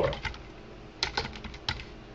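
Typing on a computer keyboard: a quick run of about six keystrokes starting about a second in.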